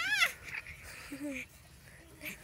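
A four-month-old baby squealing: one high-pitched vocal sound that rises and falls right at the start, then a short, softer and lower sound a little after a second in.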